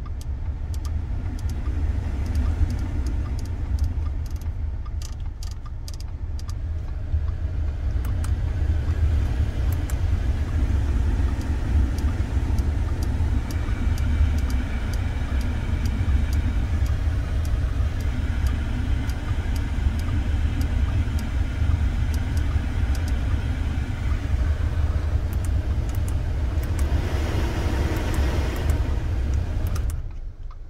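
Audi A4's climate-control blower fan blowing air over a steady low engine-idle rumble in the cabin. The airflow hiss grows louder about a quarter of the way in as the fan speed is raised, surges near the end, then cuts down suddenly. Light clicks are scattered throughout.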